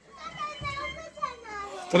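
Children's voices talking and playing, quieter than the nearby speech, with a louder child's call breaking in right at the end.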